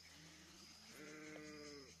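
Sheep bleating faintly, with one long bleat about halfway through.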